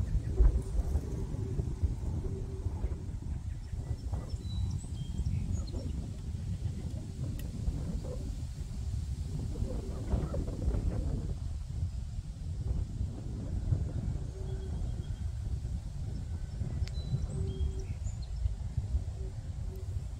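Wind buffeting the microphone in gusts, with faint birds chirping now and then in the background.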